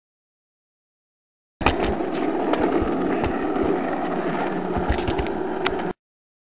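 Rolling rumble of a go-kart's small hard wheels on asphalt, with scattered clicks and knocks. It cuts in suddenly about a second and a half in and stops abruptly just before the end.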